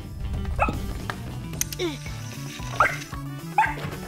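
Cartoon puppy giving a few short barks and yips over light background music.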